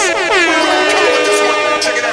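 Techno remix: a loud, horn-like synth sound with many overtones glides down in pitch over the first half second, then holds one steady tone over sustained chords, breaking off just before the beat returns.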